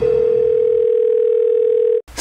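A single steady electronic tone held at one pitch, a mid-low hum like a dial tone, that cuts off suddenly at the end.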